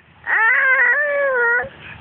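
A toddler's voice: one long, high-pitched "aah" lasting about a second and a half, rising at the start and then holding steady.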